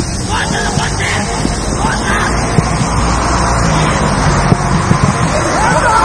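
Players shouting on a football pitch over a steady low rumble, with a louder burst of shouts near the end.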